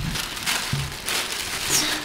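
Tissue paper rustling and crinkling as it is pulled and unfolded by hand, a steady run of crackles.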